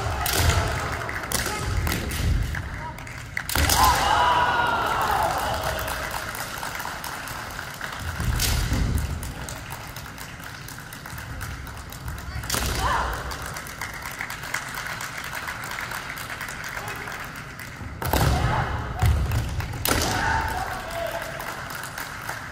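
Kendo bout: fencers' kiai shouts, stamping footwork thudding on the wooden gym floor, and a few sharp cracks of bamboo shinai strikes, echoing in a large hall.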